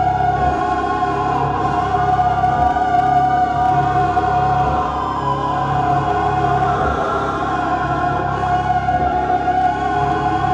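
Live experimental electronic drone music: dense layers of sustained tones held at a steady level over a low throbbing layer that drops out briefly and returns now and then.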